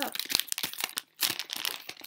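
Candy wrapper crinkling and crackling in the hands as the sour pickle ball candies are opened, irregular, with a brief stop about a second in.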